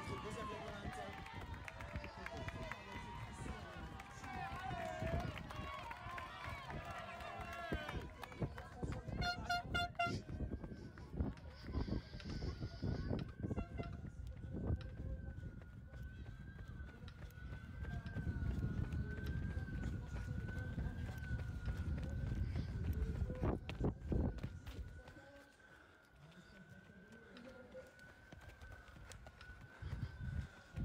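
Running footsteps from a camera carried by a runner, with spectators' voices along the course for the first several seconds. A quick series of electronic beeps comes about nine seconds in, followed by a faint wavering tone; the sound drops away near the end.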